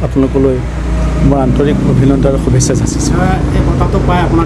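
A man talking in Assamese, over a steady low background hum.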